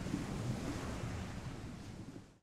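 Ocean surf sound effect: a steady wash of waves that slowly fades down.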